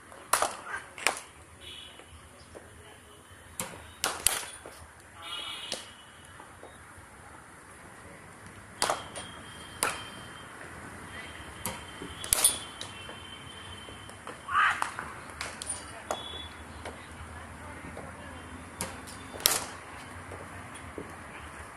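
Cricket bats striking balls in practice nets: a series of sharp, irregularly spaced cracks, about ten over the stretch, some louder and nearer, others fainter from neighbouring nets.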